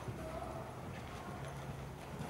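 Hoofbeats of a ridden horse trotting across a soft indoor-arena surface, a run of dull low thuds.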